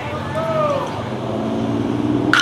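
A person shouting one drawn-out call that falls in pitch, about half a second in, followed by a steady low hum that starts about a second in.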